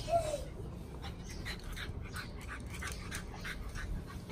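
A small dog whines briefly at the start, then makes a quick, even run of short soft sounds, about five a second.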